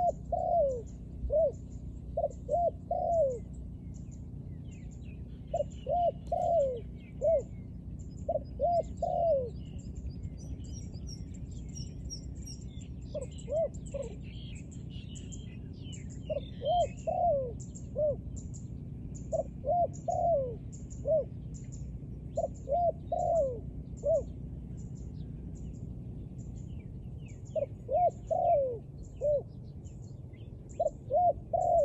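A spotted dove cooing in repeated phrases of three to five notes, each phrase a few seconds apart. A faint high tick repeats a little more than once a second throughout, and other small birds chirp in the middle stretch.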